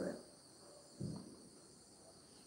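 A pause in a woman's singing: her sung note fades out at the start, then a brief soft sound about a second in, over a faint steady high-pitched hiss.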